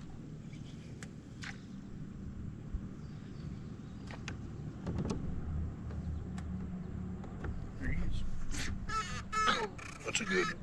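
Bow-mounted electric trolling motor humming steadily, with scattered light clicks, and a few short harsh calls near the end.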